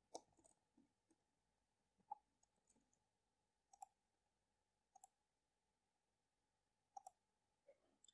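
Near silence broken by a few faint, isolated clicks from a computer mouse and keyboard, roughly one every second or two.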